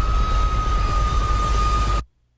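Film trailer sound design: a loud low rumble under a steady high-pitched ringing tone, cutting off abruptly at the end.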